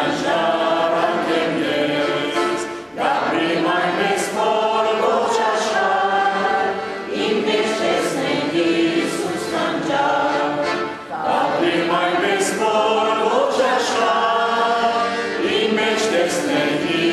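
Armenian church chant: voices singing a slow, held melody in phrases of roughly four seconds, with short breaths between them.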